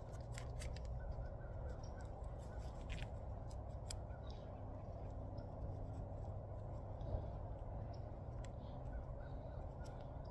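Faint small clicks and creaks of stretchy grafting tape being pulled and wound tightly around a graft union, most frequent in the first few seconds, over a steady low background rumble.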